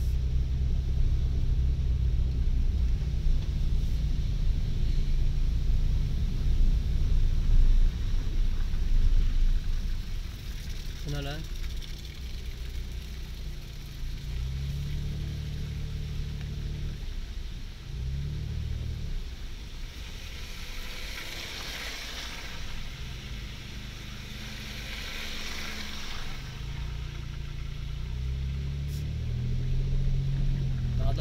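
Car engine and tyres heard from inside the cabin while driving on a rough unpaved gravel road, the engine hum shifting in pitch with speed, louder for the first few seconds and then quieter.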